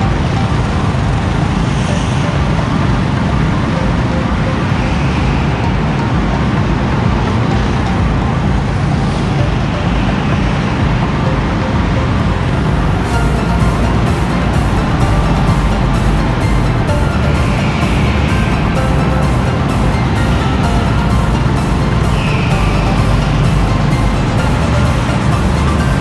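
Go-kart engines running steadily, with music playing over them. A steady beat comes in about halfway through.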